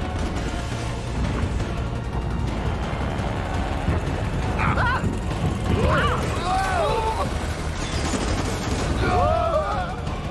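Animated action-fight soundtrack: music over a steady low rumble, with gunfire and booms. From about halfway through come short gliding cries.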